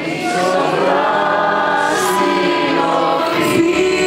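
A woman singing a Greek song live with a small band of guitars and percussion behind her, holding long notes of the melody.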